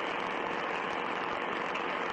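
Steady hiss of recording noise, an even static with no voices in it.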